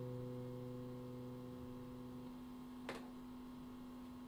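Acoustic guitar notes ringing on and slowly fading away, the lowest note dying out a little past halfway, with a faint click about three seconds in.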